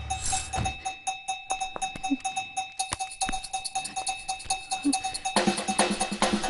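Tense film background score: fast, evenly repeating metallic ticks like a cowbell over a single held tone. Fuller instruments come in about five seconds in.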